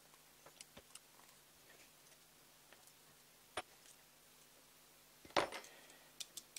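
Faint scattered clicks and taps of a carbon-fibre quadcopter frame and its small bolts being handled during assembly, with a sharp tap about three and a half seconds in and a louder knock near the end.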